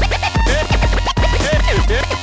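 DJ scratching a record on a turntable, quick back-and-forth strokes giving rising and falling whizzing sweeps, over a bass-heavy electronic dance beat.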